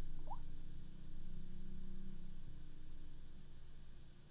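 Steady low background hum, with one brief faint rising chirp about a third of a second in.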